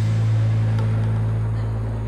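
A loud, steady low drone with a faint hiss above it, starting suddenly and slowly fading.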